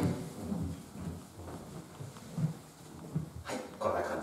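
Footsteps walking across the floor of an empty room, soft low thuds about twice a second, with a brief rustle near the end.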